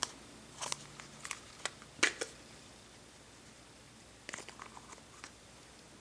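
Light, scattered clicks and crackles of a thin plastic wax-melt tub being handled, the loudest about two seconds in, with a second cluster of small clicks a little past four seconds.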